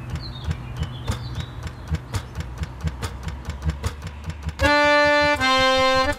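A low steady rumble with rapid, irregular clicking, then about four and a half seconds in a harmonium sounds two held notes, the second a little lower; the harmonium notes are the loudest thing.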